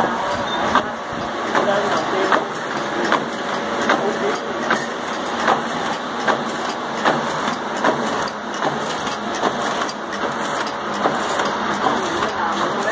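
Long incense stick making machine running, driven by its 3 hp three-phase motor through a crank and connecting rod: a steady mechanical clatter with a sharp knock at each stroke, a little more than one a second.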